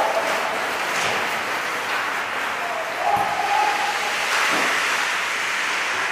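Indoor ice-rink hockey practice: skates scraping on the ice under a steady hiss, with a few light knocks of sticks and pucks and a player's shout about three seconds in.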